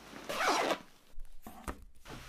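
A short rasping swish, then two light clicks.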